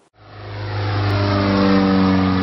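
A low, steady engine note, laid in as an outro sound, fades in over about a second and a half, its pitch sinking slowly like a machine passing by.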